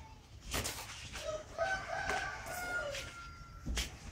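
A rooster crowing once, a single drawn-out call of about two seconds starting a little over a second in. Short swishing noises come just before and after it.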